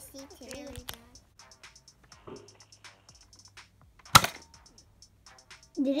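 A Nerf blaster firing a foam dart: one sharp, loud crack about four seconds in, after light clicks and handling noises.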